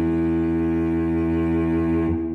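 Background music: a low sustained chord held steady.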